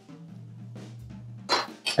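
Soft background music, with a short, loud metal-on-wood scrape about a second and a half in as the metal sheet pan of cauliflower is taken hold of on the wooden cutting board.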